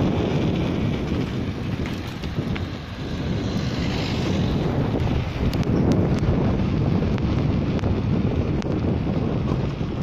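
Wind buffeting the microphone of a camera on a moving bicycle: a steady, fairly loud rush with a brief lull about a third of the way in and a few faint ticks about halfway through.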